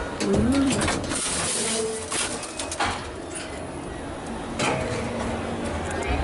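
Metal rattling and clanking of an old elevator's folding brass scissor gate being handled, with sharp clatters in the first two seconds and again near the end. A brief low rising-and-falling tone is heard about half a second in.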